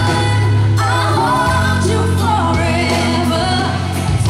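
Live pop band with a female lead singer, her voice gliding between held notes over steady, sustained bass.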